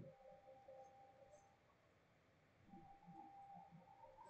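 Near silence: faint room tone with a faint, steady low hum.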